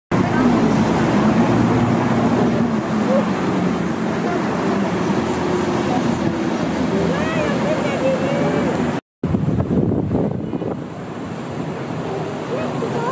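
Steady outdoor city noise, traffic with faint voices mixed in, broken by a brief cut to silence about nine seconds in.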